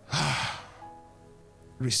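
A man's loud, breathy sigh into a handheld microphone, lasting about half a second just after the start, over soft sustained keyboard music.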